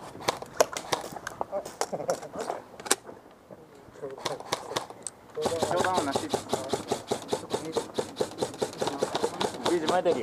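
Airsoft electric guns firing: scattered single shots in the first few seconds, then a rapid, even string of fully automatic fire that starts about halfway through and runs on.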